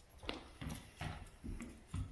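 Footsteps of several people walking across a hard floor, about five steps in two seconds.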